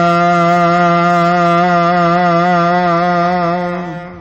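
A man's voice chanting Gurbani, holding one long, slightly wavering note that fades out just before the end.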